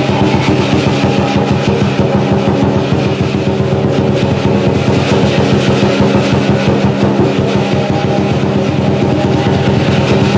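Lion dance percussion: a drum beating with clashing cymbals and a gong in a fast, steady rhythm, loud and ringing without a break.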